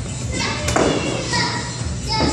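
Background voices in a large, echoing room, with one sharp smack about two-thirds of a second in.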